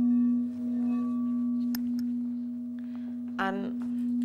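A 12-inch frosted crystal singing bowl rings with one steady low tone that slowly swells and eases, with faint higher overtones above it.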